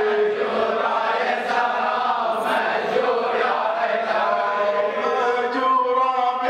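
A group of men chanting a Shia mourning lament (latmiya) together, in long drawn-out sung lines.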